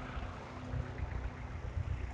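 Low, fluctuating rumble of wind and road noise while riding a bicycle through city traffic, with a faint steady engine hum from nearby traffic that fades out partway through.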